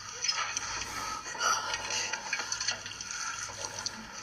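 Background soundtrack of a film or TV drama between lines of dialogue: a steady water-like hiss with faint music underneath.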